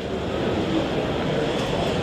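Steady, even background noise of a large exhibition hall, such as air handling and general din, with no distinct events.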